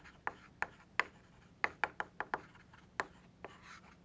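Chalk writing on a blackboard: a run of sharp, irregular taps and short scratches as the letters are formed.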